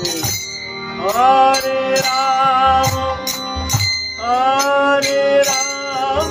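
A man singing long, held lines of a devotional kirtan chant to a hand-pumped harmonium, with each line sliding up into its held note. A steady jingling percussion beat keeps time.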